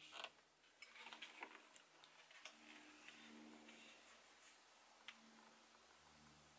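Near silence, with faint clicks and light rubbing from a fiberglass skateboard enclosure being handled and turned: a few small clicks about a second in and a single click near the end.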